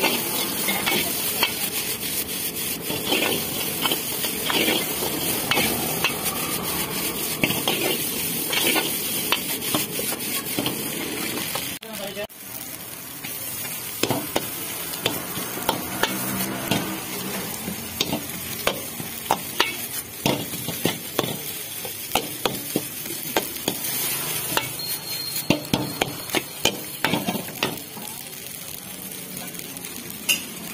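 Noodles stir-frying in a large black wok: a steady sizzle with frequent sharp clacks of a metal ladle against the pan as the noodles are tossed. The sound dips briefly about twelve seconds in.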